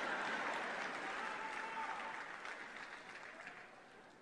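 Convention hall crowd applauding, fairly faint, dying away to near silence toward the end.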